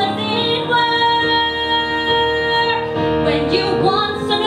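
A woman singing a musical-theatre ballad with instrumental accompaniment, holding one long note for about two seconds in the middle.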